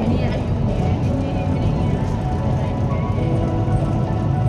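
MRT train running along an elevated track, heard inside the carriage as a steady low rumble.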